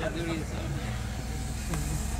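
Steady low rumble with faint, indistinct voices in the background.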